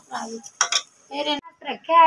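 A metal ladle scraping and knocking against an aluminium pressure cooker as a thick curry is stirred, with a sharp clink about one and a half seconds in.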